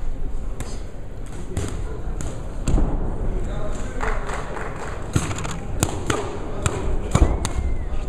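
Sharp smacks and thuds of boxing gloves landing, about ten of them, bunched in the second half, over the shouting voices of a hall crowd.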